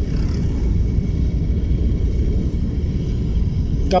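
Steady low rumble of a car heard from inside the cabin: engine and road noise of a Nissan car.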